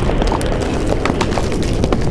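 Sound-design effects of stone cracking and crumbling: a steady low rumble under many small clattering clicks of falling debris.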